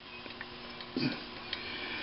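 Faint light clicks from a cast-iron engine cylinder head with its valve springs being handled and turned on a bench, over a low steady hum.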